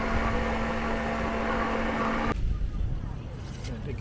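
Electric countertop blender running steadily as it blends a fruit smoothie, with a steady motor hum that cuts off abruptly about two seconds in. Quieter market background follows.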